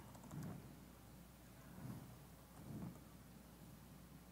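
Near silence with faint laptop keyboard typing picked up by the lectern microphone: a few soft knocks and light key clicks.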